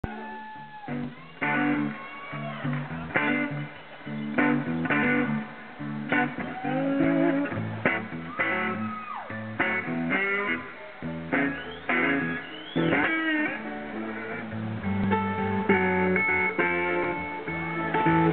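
Electric slide guitar on a red Gibson SG playing a free blues intro, picked phrases with notes sliding up and down in pitch.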